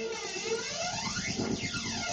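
Electronic dance music from a live DJ set, carried by a sweeping synthesizer or filter effect whose pitch glides down and back up over a fast, pulsing low beat.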